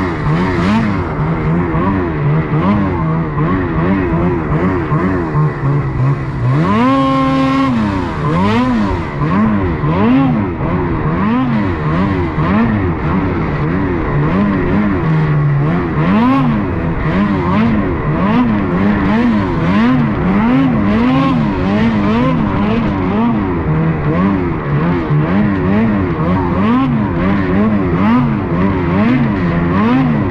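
Ski-Doo snowmobile engine under constant throttle changes, its pitch rising and falling about once a second as it is ridden through trees. About seven seconds in it revs sharply higher and holds there for a moment before dropping back.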